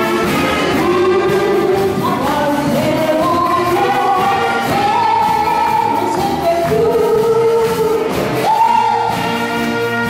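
A woman singing through a microphone and PA with a live band of saxophones and drums, held notes stepping up and down the melody. The audience claps along in time.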